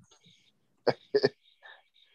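A short pause, then two short, sharp vocal sounds from a person about a second in, a quarter second apart, such as a throat clear.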